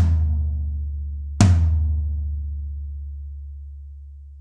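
Zebra Drums free-floating floor tom, London plane shell with coated Ambassador heads, struck twice with a stick: once at the start and again about a second and a half in. Each hit has a sharp attack and a deep, long ring that fades slowly.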